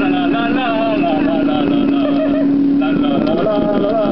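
Motorboat engine running at speed with a steady, even drone, with people's voices calling out over it.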